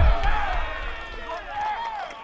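Several men's voices shouting and cheering at once, loudest at the start and fading, in reaction to a called strikeout.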